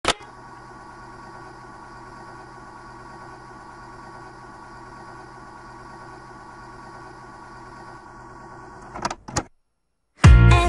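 A key clicks down on a National stereo radio-cassette recorder, and the machine then runs with a steady motor hum and tape hiss. A few more clicks come near the end, and the sound cuts off.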